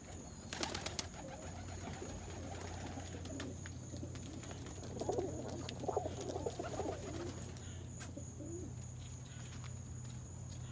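Domestic roller pigeon cockbirds cooing, with a warbling run of coos loudest about five to seven seconds in. There are a few sharp clicks just under a second in.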